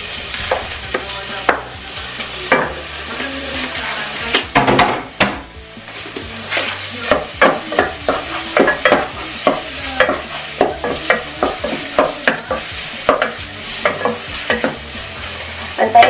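Raw chicken pieces frying in hot oil with onion and garlic in a pot, sizzling steadily while a wooden spoon stirs them. The spoon knocks and scrapes against the pot many times, most often in the second half.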